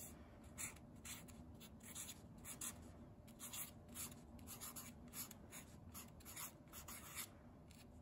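Sharpie permanent marker writing on a paper index card: a quick run of short, faint strokes as a word is written out.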